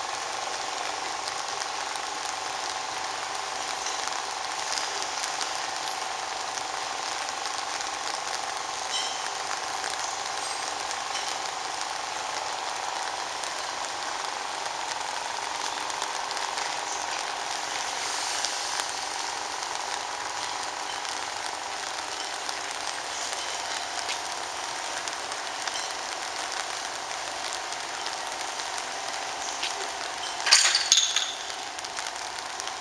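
Steady machine hum with a hiss of air from the air supply raising a pneumatic telescopic mast as it extends. The tone shifts slightly about halfway through.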